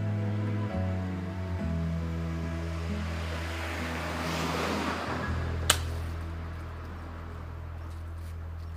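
Slow background music of long held notes, with one sharp click a little past halfway: a driver striking a teed golf ball off a practice mat.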